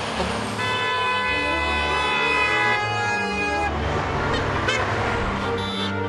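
A vehicle horn sounds one long honk, held for about three seconds, over the noise of passing road traffic.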